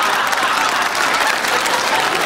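Studio audience applauding and laughing, steady throughout.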